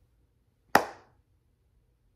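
A single sharp hand clap about three-quarters of a second in, with a brief fading ring of room echo; otherwise faint room tone.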